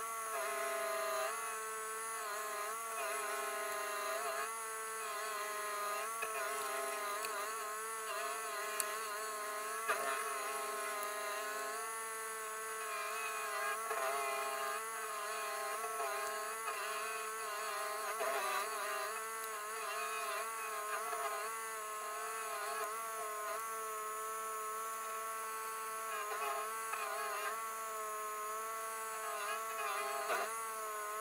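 Rayco RG1635 Super Jr. stump grinder's engine running at high speed, a steady drone whose pitch keeps rising and dipping.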